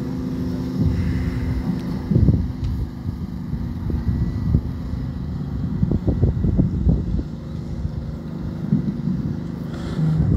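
Wind buffeting the microphone: an uneven low rumble that swells in gusts, strongest about two seconds in and again between six and seven seconds.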